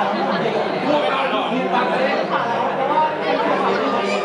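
Overlapping chatter of several people talking at once, steady and without a pause.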